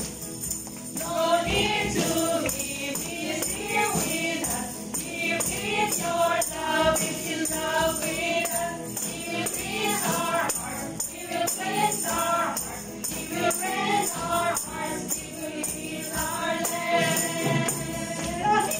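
Christian praise and worship song sung by women's voices with musical accompaniment, with tambourines jingling in time with the beat.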